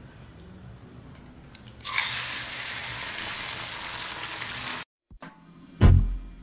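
An egg dropped into a hot frying pan, sizzling loudly for about three seconds and then cutting off suddenly, after a faint low hum. Music with a drum beat starts near the end.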